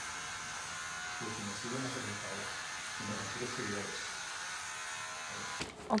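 Electric hair clippers buzzing steadily as a barber trims a man's hair, with quiet voices under the buzz. The buzz cuts off abruptly near the end.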